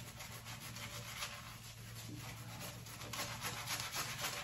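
Synthetic-bristle shaving brush worked briskly over a lathered face: a soft, rapid rubbing and swishing of bristles through shaving-soap lather.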